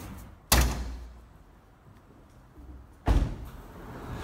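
A Toyota Camry's trunk lid slammed shut with a sharp thud, then a second, slightly quieter car-body thud about two and a half seconds later.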